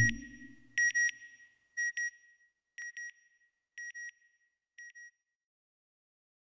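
Electronic double beep, like a satellite signal, repeated about once a second five times and growing fainter each time, like an echo dying away. At the very start a low rumble fades out.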